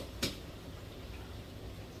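A single short click about a quarter second in, then a quiet steady background hum.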